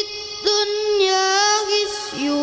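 A boy's voice reciting the Quran in a sung, melodic tilawah style into a microphone. He holds long, ornamented notes, with a short break for breath about half a second in.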